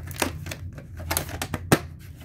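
Hard plastic clicks and knocks of a clamshell VHS case being opened and a cassette being lifted out of it: a quick, uneven run of clicks, with the sharpest knock shortly before the end.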